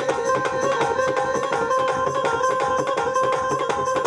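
Instrumental devotional folk music: a hand-played dholak barrel drum keeps a fast, even rhythm under a sustained melody line that steps from note to note.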